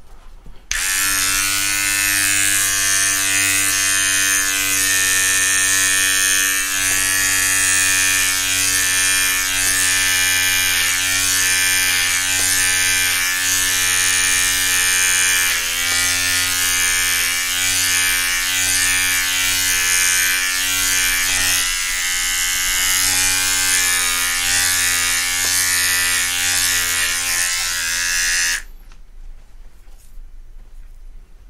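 Electric hair clippers with a guard comb fitted, trimming the side of the head above the ear: a steady buzz that starts abruptly about a second in and stops abruptly near the end. Its pitch dips slightly about halfway through.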